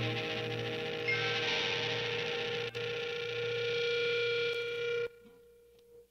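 Alternative rock track with held electric guitar chords, cutting off abruptly about five seconds in and leaving one faint lingering note.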